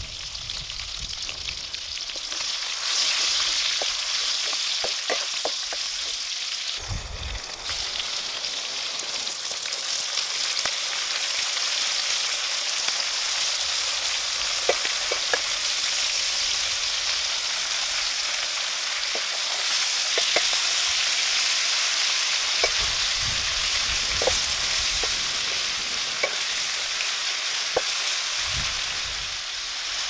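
Oil sizzling steadily in a wok as minced garlic and red chilies fry, then young corn and corn stalks are stir-fried, with scattered clicks and knocks of a wooden spatula against the pan.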